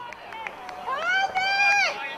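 A spectator's high-pitched shout of encouragement: one long call of about a second in the second half, rising, held, then falling away. A few light handclaps come just before it.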